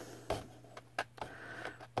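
A few faint, short clicks and light taps as an upturned plastic cup of acrylic paint is held and set on a canvas, over a low steady hum.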